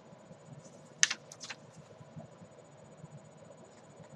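Glossy magazine pages being handled and turned: a sharp papery crackle about a second in, then two softer ones, and a few faint ticks later.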